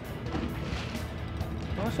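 The boat's engine idling in a low, steady hum under background music, with a man saying "nice" near the end.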